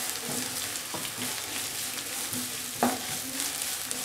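Wooden spatula stirring and scraping grated coconut, shallots and curry leaves in a non-stick wok, over a light sizzle of frying. Small scrapes and clicks throughout, with one sharper click near three seconds in.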